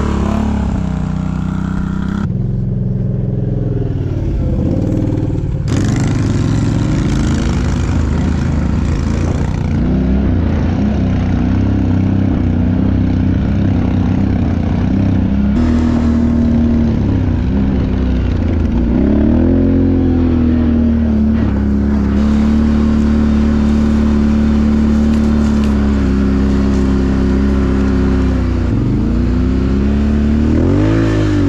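ATV engines running and revving off-road, the engine note rising and falling with the throttle. The sound changes abruptly a few times where separate riding shots are joined.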